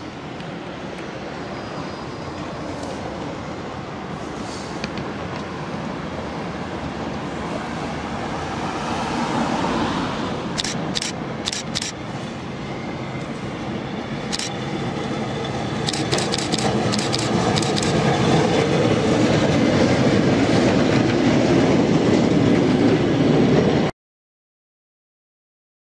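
Historic yellow tram approaching and passing close, its running rumble growing steadily louder. Sharp clicks come from the wheels over rail joints or points, a cluster about halfway through and more a few seconds later. Street traffic runs underneath at the start.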